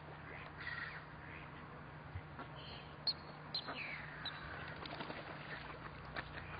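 Long-tailed ducks calling: a string of short calls, some gliding in pitch. Two sharp clicks about three seconds in are the loudest sounds.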